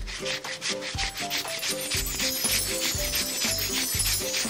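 Cartoon digging sound effect: rapid, repeated scratching strokes of paws tunnelling through sand and earth, over light background music with short melodic notes.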